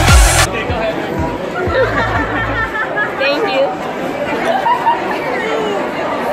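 Bass-heavy dance music cuts off about half a second in with a quick falling sweep, and a low bass hum holds for about two more seconds. After that there is the chatter of a crowd, with several voices talking and laughing in an echoing hall.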